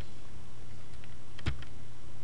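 Clicks from a computer keyboard and mouse in use: one sharp click about one and a half seconds in, a fainter one just after it and a weak one before, over a steady low hum.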